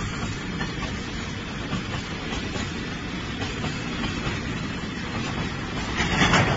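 Train running on rails, a steady rumble of rolling wheels.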